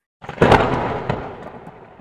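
A sudden loud boom sound effect, with a smaller second hit about a second in, fading away over about two seconds. It is the logo sting on the outro card.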